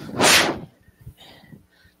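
A single loud rush of breath blown close to the microphone, lasting about half a second and then fading out.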